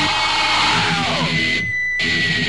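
Heavy metal music led by a distorted electric guitar, with a held note that slides down in pitch about a second and a half in.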